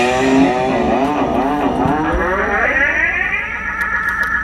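A loud, wavering pitched tone with heavy vibrato, amplified through the band's stage sound, sliding slowly upward and then holding high near the end.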